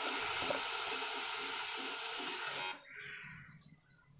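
Sliced onions and curry leaves sizzling in hot oil in an aluminium kadai: a steady frying hiss that cuts off abruptly about two-thirds of the way through.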